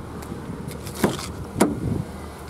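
Car door being opened: a sharp click about a second in and another knock about half a second later, over a low steady hum.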